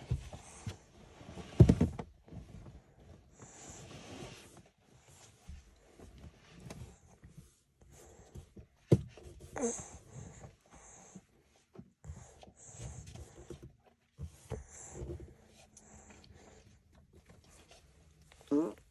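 A baby breastfeeding, with quiet sucking, swallowing and breathing through the nose. A single loud thump comes about a second and a half in, the baby's foot kicking against the car window.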